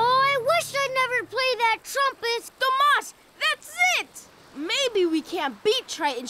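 A high-pitched cartoon character voice in quick syllables, its pitch swooping up and down.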